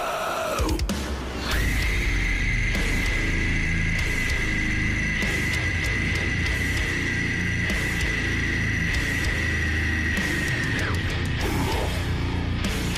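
Rock band playing: electric guitars and a drum kit, with one high guitar note held steady for about nine seconds that stops near the end.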